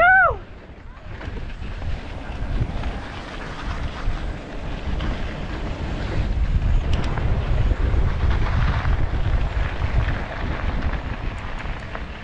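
Wind buffeting the microphone of a camera riding on a moving mountain bike, over a steady low rumble of riding on a dirt trail, louder in the second half. A short pitched call rises and falls right at the start.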